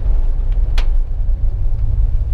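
Low rumble inside the cab of a 1973 Ford F100 4x4 pickup as it brakes hard to a stop in a brake test, with one sharp click about three quarters of a second in.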